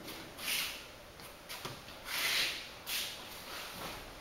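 Bare feet sliding and shuffling on vinyl tatami mats, with the gi's cloth rustling, as a judoka steps through footwork alone: a few soft swishes about half a second in, around two seconds in and just before three seconds, with a small tap in between.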